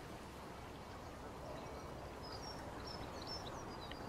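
Quiet outdoor ambience: a steady background hush with faint, high bird chirps coming in from about a second and a half in.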